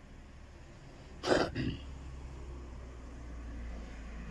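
A person coughs once, a short harsh burst about a second in, over a steady low background hum.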